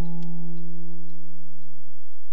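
The last strummed chord of a song on an acoustic guitar, left ringing out as the song ends.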